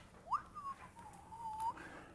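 A person whistling a few notes: a quick upward swoop, then a held, wavering tone that drifts down and lifts again, lasting about a second and a half.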